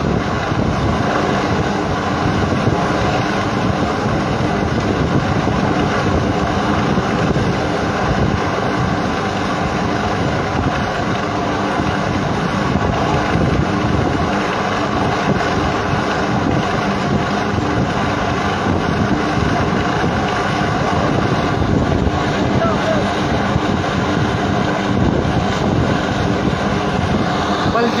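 Military helicopter hovering, its rotor and engine making a steady drone.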